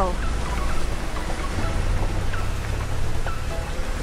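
Steady hiss of falling water, as from rain or waterfall spray coming down on a wet road, over low background music.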